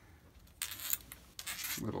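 Two short bursts of metal scraping and rattling: a metal lightsaber hilt being turned back a couple of threads on its threaded rod, with the washers stacked on it shifting. The second burst is the longer of the two.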